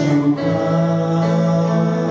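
Amplified duet singing over a karaoke backing track with guitar. A note is held steadily from about half a second in.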